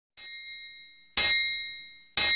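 Countdown-timer sound effect: bell-like dings about a second apart, each ringing and fading away; a soft one at the start and a louder one about a second in.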